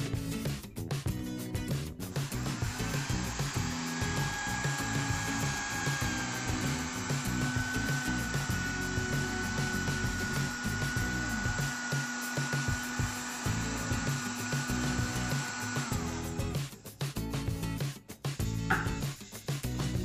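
Mondial countertop blender motor running with a steady whine as it mixes a liquid batter of milk, oil and eggs. It starts about two seconds in, runs for about fourteen seconds, then stops.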